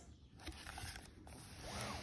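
Faint rustling and scraping of a cardboard board book being handled as its page is turned.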